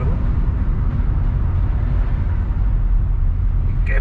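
A car driving along a city street: a steady, low engine and road rumble with no sharp knocks or changes.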